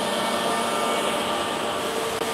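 Steady hum of running industrial machinery, an even noise with a few constant tones and no change in level.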